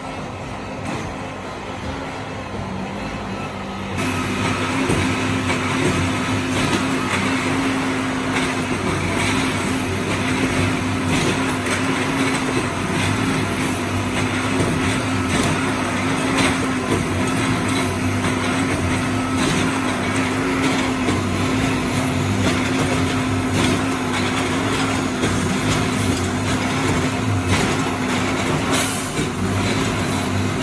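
Railway track tamper running steadily on the line, with a continuous machine drone and repeated metallic clanks. It gets much louder about four seconds in.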